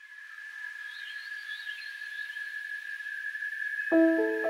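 Night forest ambience: a steady, high insect drone with a few warbling bird chirps about a second in, growing slowly louder. A piano note is struck right at the end.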